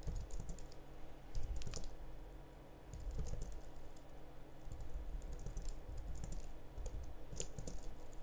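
Typing on a computer keyboard: irregular runs of key clicks, with a brief lull a little after two seconds in.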